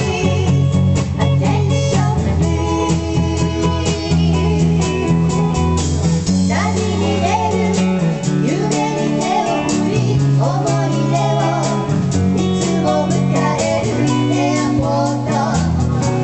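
Live rock band: two electric guitars and drums playing steadily, with women's voices singing over them from about six seconds in.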